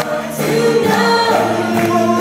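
Live praise and worship music: a band with keyboard backing several voices singing together.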